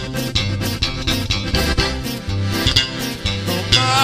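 Live sierreño band playing an instrumental passage: accordion melody over a steady strummed guitar rhythm and bass.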